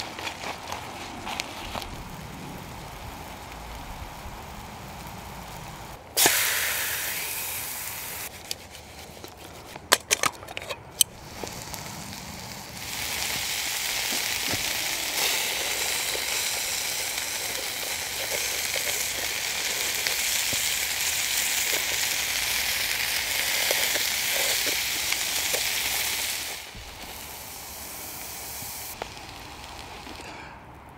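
Food frying in a pan on a camping spirit stove. A sudden sizzle fades over a couple of seconds, followed by a few sharp clicks. Then a long steady sizzle runs for about thirteen seconds and stops abruptly.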